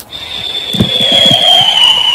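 A cartoon-style whistle sound effect: one long tone sliding slowly down in pitch and growing louder, like the whistle of something falling from above, with a few soft low thumps about a second in.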